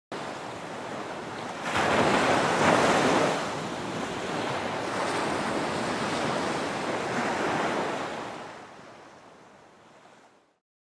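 Sea waves washing on a shore. They swell loudest about two seconds in, settle into a steady wash, and fade out near the end.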